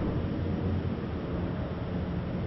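Road traffic on a busy street: a steady low noise of passing cars.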